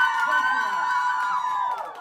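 A long, high-pitched cheering whoop, held steady and then dying away shortly before the end.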